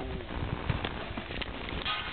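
Horses' hooves stepping and shifting on the dirt of a corral, heard as scattered irregular thuds and knocks.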